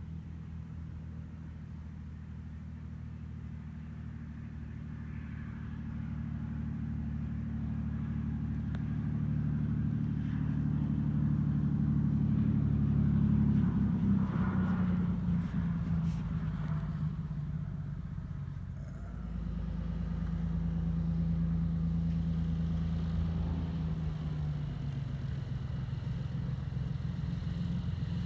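Beech Bonanza's 300-horsepower six-cylinder piston engine and propeller running at low taxi power, a steady low drone. It grows louder as the plane approaches, peaks about halfway through, dips briefly, then swells again as it passes close by.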